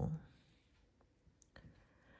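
A few faint, light clicks of a steel crochet hook working fine thread, scattered through a quiet stretch.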